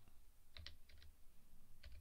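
Faint typing on a computer keyboard: a quick run of keystrokes about half a second in, then a few more near the end.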